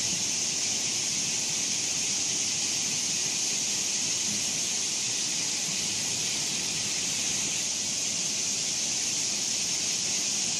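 Courtallam Main Falls in flood, heavy water cascading over the rock into its pool: a steady, hissing rush with no breaks.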